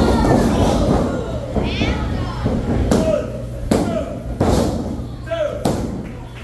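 A wrestling ring: four sharp slaps on the ring mat, under shouting from a small crowd. They fit a referee's pinfall count.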